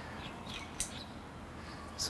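Faint bird chirps in the background, with one short sharp click a little under a second in.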